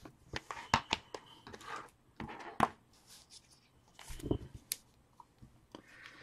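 Trading cards and their plastic top loaders and sleeves being handled by hand: soft rustles broken by a few sharp clicks.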